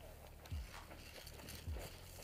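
Faint footsteps of a person moving over dry ground, heard as a few soft, spaced thumps over a low steady hum.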